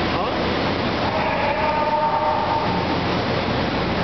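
Loud, steady machine-shop background noise. A held tone joins it about a second in and drops away after about three seconds.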